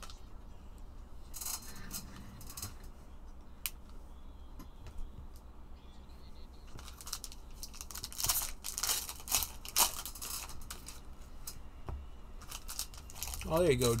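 Trading-card packs being opened and the cards handled: short bursts of crinkling foil wrapper and rustling card stock, a few near the start and a denser run from about seven to ten seconds in.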